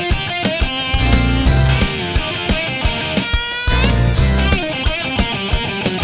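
Instrumental opening of a rock song: guitar over bass and a steady drum beat, with a guitar line gliding up in pitch about three seconds in.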